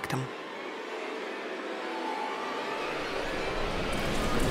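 Road traffic noise fading in: a steady rush that swells gradually over a few seconds.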